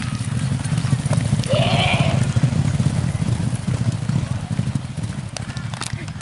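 Racehorses galloping past on turf, their hooves making a dense low rumble that swells about two seconds in and then fades as the field moves away. A short rising-and-falling call cuts through about one and a half seconds in.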